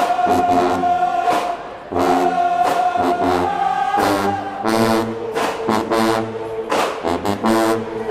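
Marching band brass and drums playing: brass sustaining long notes over repeated drum hits.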